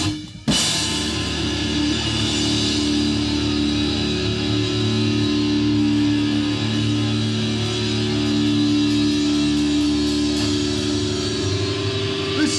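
Live hardcore band's electric guitar and bass amplifiers holding a loud, steady, droning chord with faint cymbal ticks. There is a brief dropout about half a second in, after which the held chord rings on.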